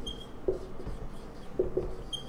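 Dry-erase marker writing on a whiteboard: a few short separate strokes, the strongest about half a second in and two close together near the end.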